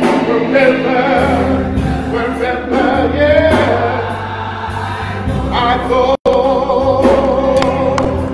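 Gospel song sung with held, wavering notes, led by a man's voice, with the congregation joining in over steady sustained accompaniment chords. The sound cuts out for an instant about six seconds in.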